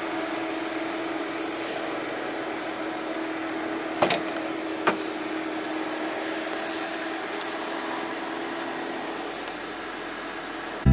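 Two sharp clicks about a second apart, some four seconds in, over a steady hum: a car door's keyless handle and latch releasing as the door is opened.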